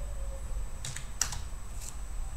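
Computer keyboard typing: a few separate keystrokes in the second half, entering a web search.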